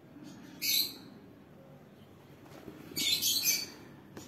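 Two short, high-pitched bird chirps, the first about half a second in and a quicker cluster near the end, over the faint sound of a ballpoint pen writing on paper.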